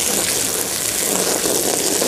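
Water from a garden hose spray wand spattering steadily onto flattened cardboard, wetting it down so it turns heavy and smothers the weeds beneath.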